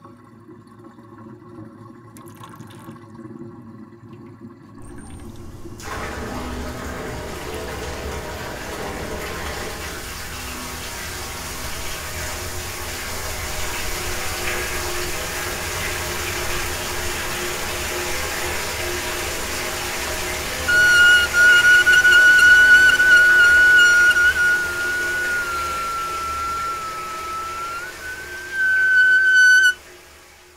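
Horror score and sound design: a low drone and rushing noise swell in about six seconds in. From about two-thirds of the way through, a loud, shrill sustained tone rides on top, wavering and dipping, then returns briefly and cuts off suddenly.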